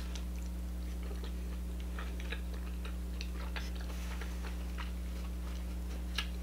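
Faint, scattered wet mouth clicks of someone chewing king crab meat, over a steady low hum.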